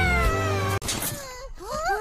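A child's long drawn-out shout that falls in pitch as it ends and cuts off abruptly a little under a second in. Then short rising-and-falling wails of a child crying.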